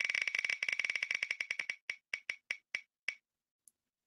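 Picker Wheel spinner's tick sound effect: a fast run of sharp, high ticks, one for each number segment the wheel passes, slowing steadily as the wheel coasts to a stop. The last tick comes about three seconds in.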